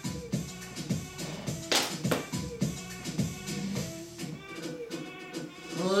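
Workout music with a steady beat playing through a portable speaker.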